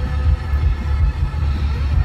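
Steady low road rumble inside a moving car's cabin.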